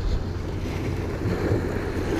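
Small waves washing and splashing against the boulders of a rock jetty, with wind buffeting the microphone.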